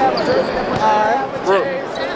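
Chatter of several voices in a gymnasium, with a basketball bouncing on the court.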